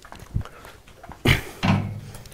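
A soft thump, then a sharp knock a little past halfway, followed near the end by a brief low hum.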